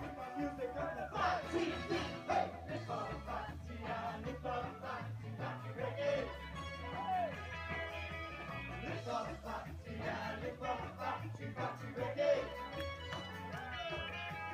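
A live ska band playing with a steady, repeating bass-and-drum beat, electric guitar and keyboard, with voices gliding up and down over the music.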